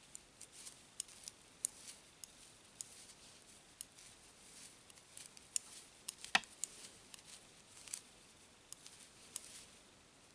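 Metal knitting needles clicking faintly and irregularly as stitches of wool are knitted, with one sharper click a little past six seconds in.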